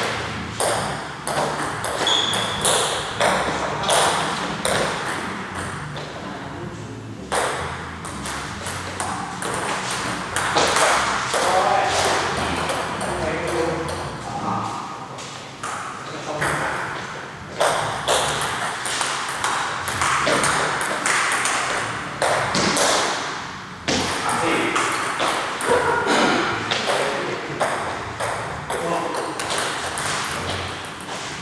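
Table tennis rally: the ball clicking off the paddles and the table in a quick, steady run of hits, with short pauses between points.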